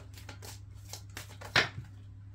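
A tarot deck being shuffled by hand: a quick run of card slaps and flicks, with one sharper, louder snap about a second and a half in. A steady low hum sits underneath.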